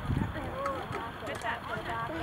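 Distant voices shouting across a soccer field, over a low rumble.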